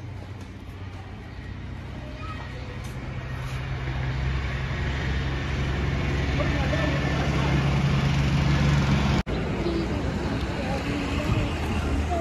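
Road traffic: a motor vehicle's low engine rumble growing steadily louder over several seconds, then breaking off suddenly about nine seconds in, with faint voices in the background.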